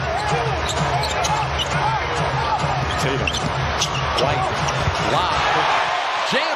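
Live basketball game sound on a hardwood court: a ball dribbling and many short sneaker squeaks, over a steady arena crowd murmur.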